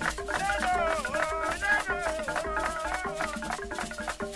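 Traditional Cameroonian percussion music: short, repeated pitched notes over a busy shaker-like rattle. A high, wavering melody line comes in just after the start and drops out shortly before the end.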